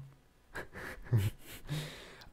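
A short pause in conversation: almost silent at first, then a person breathing and two brief voiced murmurs, the second near the end.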